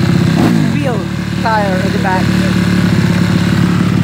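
A motorcycle engine idling steadily, with a few short falling-pitched sounds over it about half a second and one and a half seconds in.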